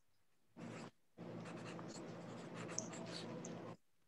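Faint scratching of a stylus drawing on a tablet or pen-display surface: one short stroke about half a second in, then one longer continuous stroke of about two and a half seconds.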